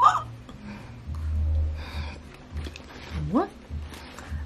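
A woman's wordless excited vocal exclamations: a short rising squeal at the start and a rising, drawn-out 'ooh' about three seconds in.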